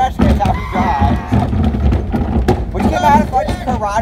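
Steady low rumble of a pickup truck rolling along a gravel driveway, with a wheeled trash can towed along the gravel from its tailgate, under shouting voices.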